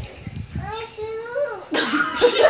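A woman's voice making drawn-out wordless sounds that slide up and down in pitch, then laughter breaking out near the end.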